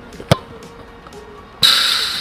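A football struck hard by a kick, one sharp thud about a third of a second in, over faint background music. Near the end, a sudden loud rushing noise cuts in.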